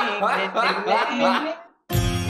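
Loud laughter in quick rising bursts for about a second and a half. It cuts out suddenly to silence, and guitar music starts right at the end.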